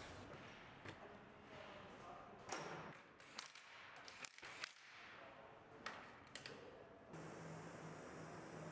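A few faint, sharp clicks and knocks from hand-tool work on the wheels' lug nuts as the wheels are remounted. A low steady hum comes in near the end.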